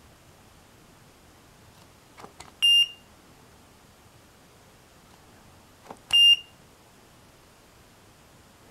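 Digital timer beeping briefly twice, about three and a half seconds apart, each short high beep just after a faint click of its push button: the button presses that pause and then resume the count.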